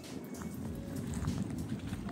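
Wind rumbling on the microphone and running footsteps, growing louder, as the person filming jogs along.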